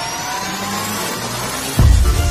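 Electronic intro music: a rising sweep builds up, then a deep bass hit lands just before the end.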